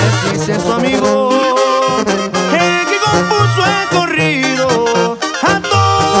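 Banda brass section playing an instrumental passage between sung verses: trumpets and trombones carry the melody in harmony over a pulsing tuba bass line, with percussion hits.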